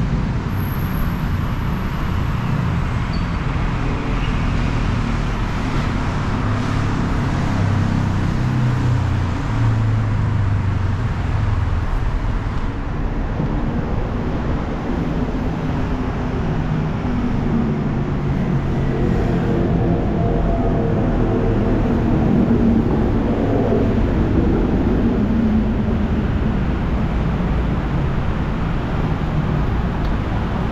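Steady city road traffic from the streets below, with one vehicle's engine rising and falling in pitch as it passes, about twenty to twenty-five seconds in.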